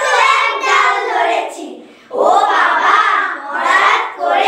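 A group of young girls reciting a Bengali poem in unison. The recitation runs in two phrases, with a short breath pause about two seconds in.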